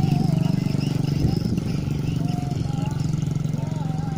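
A diesel truck engine idling steadily close by, a low pulsing hum, with faint voices in the background.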